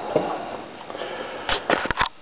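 A few quick knocks and clinks near the end as a glass bottle is picked up off a countertop, over faint room noise.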